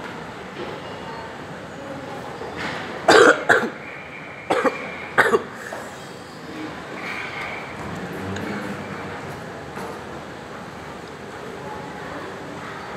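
A person coughing in three short bouts, about three to five and a half seconds in, over steady background noise.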